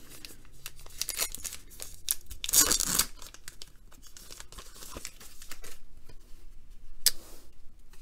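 A trading-card pack wrapper being torn open and crinkled, with the rustle of cards being handled; the loudest rip comes between two and three seconds in, and a sharp crinkle about seven seconds in.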